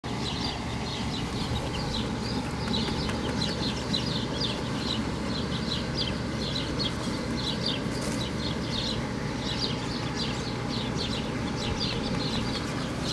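Birds chirping in quick short high calls, several a second and continuing throughout, over a steady low rumble.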